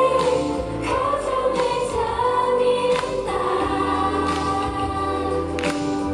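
Live pop song: two female singers singing together into handheld microphones over backing music, amplified through the venue's sound system.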